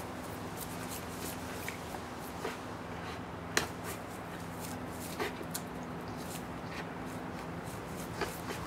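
American pit bull terrier jumping at and hanging from a spring-pole rope toy: scattered soft clicks and thumps, one sharper click about three and a half seconds in, over a steady low hum.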